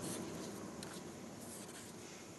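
Faint hiss-like background noise fading slowly, with a few soft scratchy rustles.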